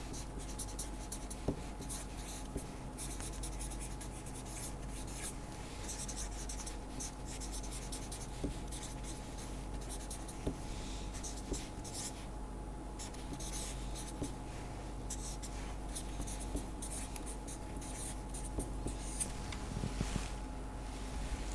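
Felt-tip marker writing on paper: a run of short strokes with small gaps between them and a brief lull about twelve seconds in, over a faint steady hum.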